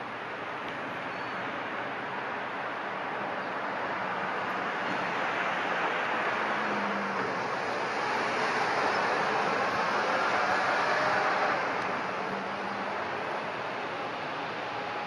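A passing vehicle: steady traffic-like rushing noise that swells slowly to a peak about ten seconds in, then fades.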